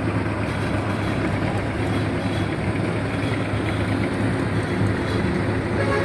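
A steady, unbroken low engine hum with a constant rumble of background noise.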